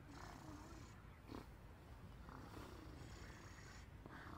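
Near silence: faint outdoor background, with one brief, faint sound about a second in.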